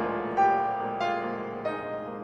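Two pianos playing a slow, legato passage of classical music, a new melody note sounding over held chords about every half second.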